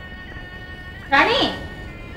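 One drawn-out cry about a second in, rising then falling in pitch, over soft held notes of background music.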